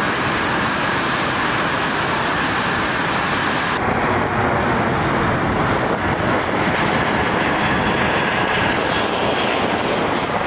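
Steady loud jet engine noise from a C-17 Globemaster III's four turbofans. About four seconds in it changes abruptly to a duller, more distant jet noise as the aircraft flies overhead.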